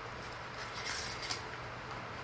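Soft rustle of fabric ribbon being pulled off its spool by hand, strongest about a second in, with a few faint clicks.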